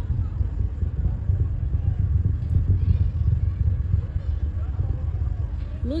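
A steady low rumble with faint voices in the background.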